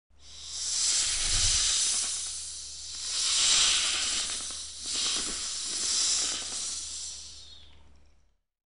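A rushing hiss over a steady low hum cuts in abruptly. It swells and eases about three times, then fades out at the end.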